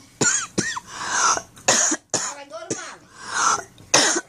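A person coughing several times in short bursts, with a couple of brief high-pitched voice sounds near the start.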